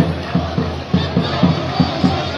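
Large crowd of marchers chanting slogans together in a steady rhythm.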